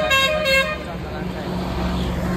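A vehicle horn sounding in short pitched blasts that stop about half a second in, followed by a steady low hum of street traffic.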